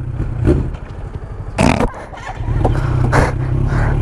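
Sport motorcycle engine running low and steady at parking-lot pace, growing a little louder about two and a half seconds in. There is a short rush of noise near the middle and another about three seconds in.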